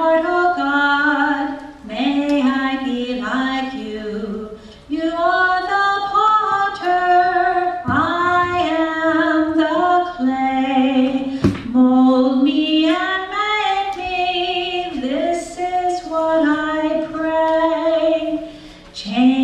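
A woman singing a slow song, with long held notes in flowing phrases.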